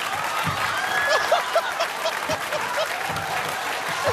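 Studio audience applauding and laughing. There is a steady patter of clapping, with a quick run of short laughs about half a second to a second and a half in.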